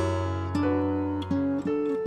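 Acoustic guitar playing a slow melody in single plucked notes, about four in two seconds, each ringing on into the next.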